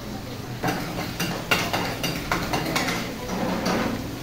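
Metal pans and utensils clinking and clattering on a stainless-steel gas range, a string of irregular sharp knocks from about half a second in.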